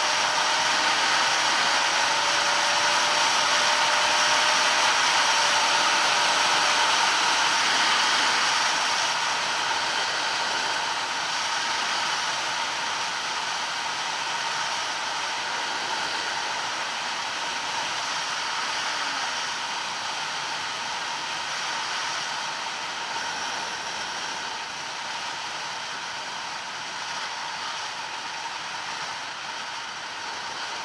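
Wind rushing over the microphone on a moving Bajaj Pulsar NS200 motorcycle, with the single-cylinder engine's hum underneath. The noise is loudest for the first nine seconds, then eases off gradually as the bike slows.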